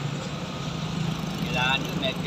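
A vehicle engine idling with a steady low hum, and a short spoken word near the end.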